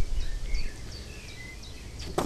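Small birds chirping, a string of short high chirps, over a low rumble that fades about two-thirds of a second in.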